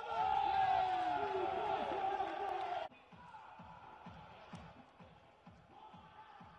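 Handball match court sound: a loud burst of many overlapping shouts and calls that cuts off sharply about three seconds in. Quieter arena sound follows, with a run of low, evenly spaced thuds.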